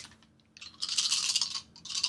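A handful of dice scooped up with a click, then shaken in cupped hands: a rattle lasting about a second, a brief pause, and a second shorter rattle near the end.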